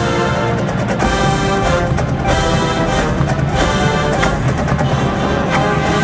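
A drum and bugle corps playing live: a full brass line holding chords over the front ensemble's mallets and drums, with sharp percussion hits through it.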